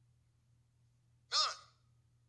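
A man's single short, breathy vocal exclamation into a microphone, falling in pitch, about a second and a half in, over a low steady hum.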